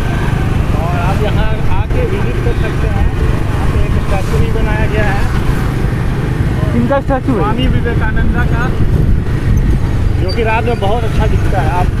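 Steady low rumble of wind on the microphone and a two-wheeler's engine and road noise while riding, with snatches of indistinct talk several times.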